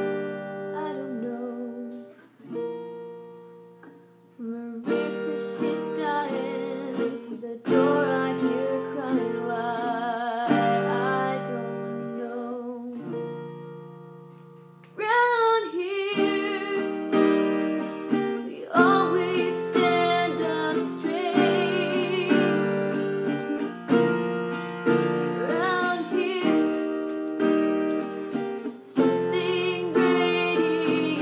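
A woman singing to her own acoustic guitar, strummed and picked. Twice the guitar is left to ring and fade, about two seconds in and again around twelve seconds in, before the strumming comes back in.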